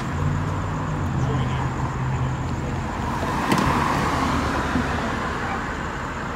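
Road traffic on a city street: an engine hums steadily close by for the first half, then a vehicle passes, its road noise swelling about three and a half seconds in and fading off.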